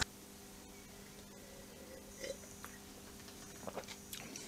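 Faint sip of wine from a glass and the mouth sounds of tasting it, about two seconds in, over a low steady hum, with a few light clicks near the end.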